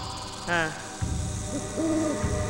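Owl hooting: a short falling call about half a second in, then a low, steady hoot near the end, over a low rumble.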